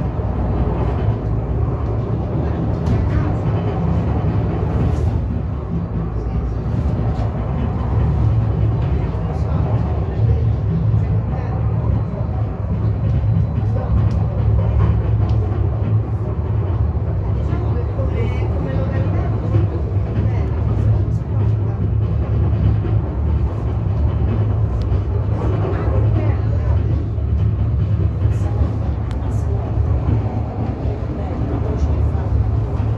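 Funicular car running down its track, a steady low rumble heard from inside the cabin, with murmured passenger voices over it.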